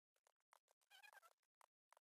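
Near silence: faint scattered clicks, with a brief faint wavering pitched sound about a second in.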